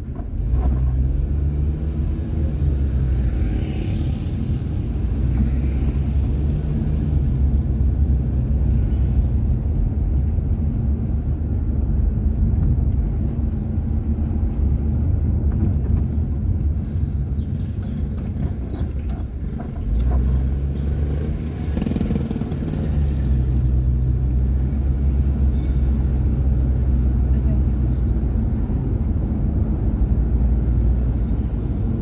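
A car's engine and tyre noise heard from inside the cabin while driving, a steady low hum whose pitch rises and falls with speed. It drops briefly about two-thirds of the way through, as the car slows, then picks up again.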